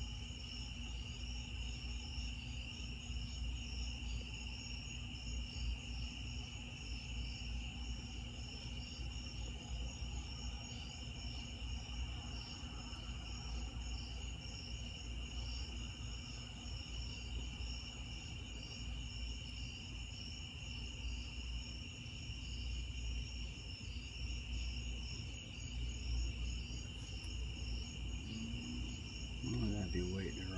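Night chorus of crickets: a steady high trilling with a faster pulsing layer above it, over a steady low hum.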